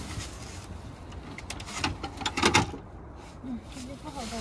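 Rustling and knocking as a foil-backed bubble insulation mat and a bed board are lifted and folded back, with a cluster of louder clatters about two and a half seconds in.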